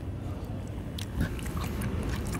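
A man chewing a mouthful of shrimp close to the microphone, with a few small clicks.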